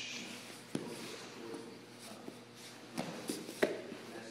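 Two grapplers in gis moving on a mat: cloth rustling and bodies shifting, with three short sharp thumps, the loudest a little after three and a half seconds in.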